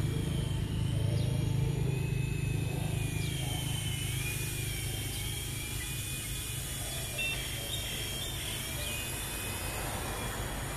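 A low engine rumble that is strongest in the first few seconds and then fades. Above it, a thin high whine wavers up and down in pitch.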